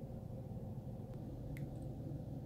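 Quiet room tone: a faint low hum, with two faint clicks about a second and a second and a half in.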